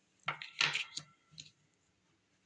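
A small tumbled stone and a card set down on a wooden tabletop: a handful of light clicks and taps in the first second and a half.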